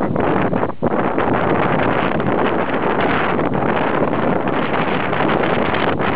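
Loud, steady wind noise rushing and fluttering over the microphone.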